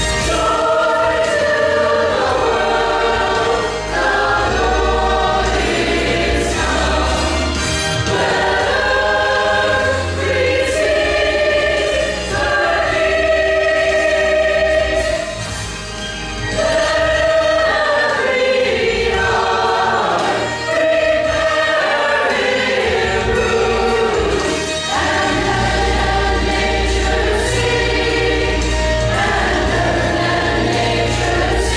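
Mixed church choir of men and women singing in parts with instrumental accompaniment and a steady bass underneath; the singing eases off briefly about halfway through.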